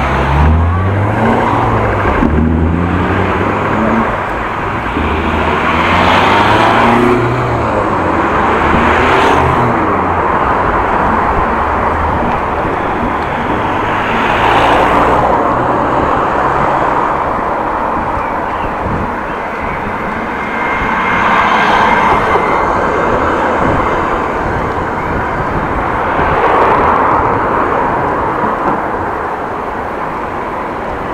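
Street traffic heard from a moving bicycle: car engines and tyres passing in swells every few seconds, with a low engine hum in the first several seconds.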